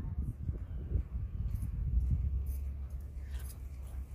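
Wind buffeting a phone's microphone, heard as a low, uneven rumble that settles into a steadier drone about halfway through.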